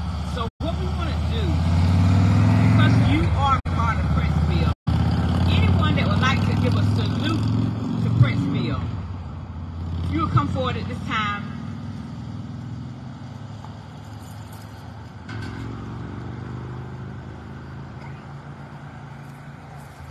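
A motor vehicle's engine passing by, a low rumble that swells over the first couple of seconds, holds, then fades away by about twelve seconds in, with people talking over it.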